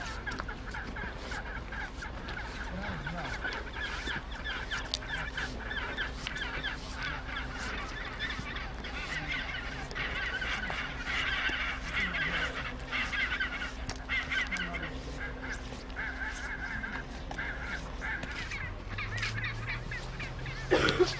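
Chinstrap penguin colony calling, with many overlapping calls throughout that grow denser from about ten seconds in.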